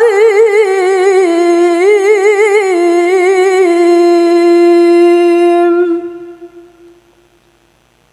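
A single voice chanting Qur'an recitation (tilawah) in melodic style, with quick wavering ornamental turns, then a long held note that fades away about six to seven seconds in.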